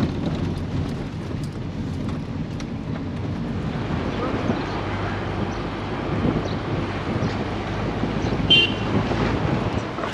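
Inside a moving car's cabin: steady engine and road rumble as the taxi drives along, with a brief high tone near the end.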